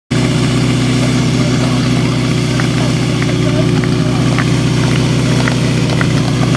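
Portable fire pump's small engine idling steadily, with faint voices of people around it.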